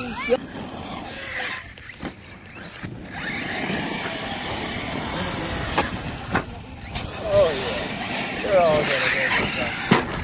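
RC cars driving fast over a loose-dirt track: a steady rush of motors and tyres throwing up dirt, with a few sharp knocks as they land or hit the ground.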